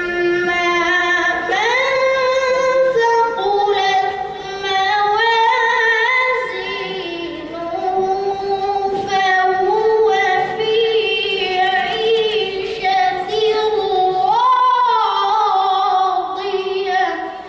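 A young boy reciting the Quran in the melodic, drawn-out tilawat style into a microphone: long held notes with wavering ornamented turns, the pitch stepping up a little way in and rising again near the end.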